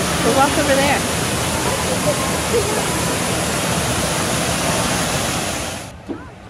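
Steady rush of a landscaped waterfall cascading over rockwork, which cuts off suddenly near the end.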